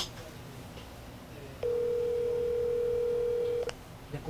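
Telephone ringback tone heard from a smartphone held to the ear: one steady beep lasting about two seconds, starting a little over a second and a half in. The call is ringing and has not been answered.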